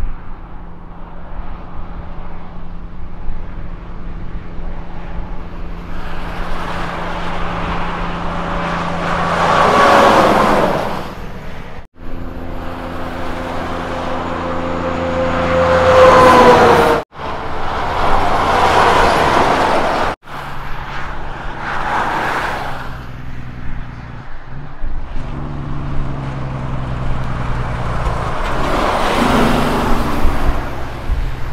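Diesel semitrailer trucks driving past one after another on a highway. Each one is a steady engine drone that swells into a loud rush of engine and tyre noise as it passes. The loudest is a cab-over prime mover hauling a curtainsider trailer, whose engine pitch drops as it goes by.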